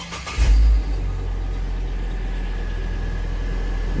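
Hummer H3 engine being started, heard from inside the cabin: it catches a little under half a second in with a brief loud surge, then settles into a steady idle.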